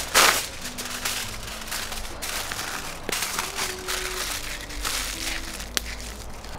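Aluminium kitchen foil rustling and crinkling as it is pulled from the roll and crumpled around a sweet potato by hand, in repeated bursts, the loudest one just after the start.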